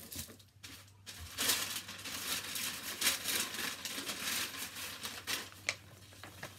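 Paper packaging rustling and crinkling as hands rummage through a box of items, starting about a second and a half in and going on in irregular crackles until near the end.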